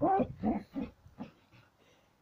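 A person laughing, a run of short rhythmic bursts that trails off and fades out about a second and a half in.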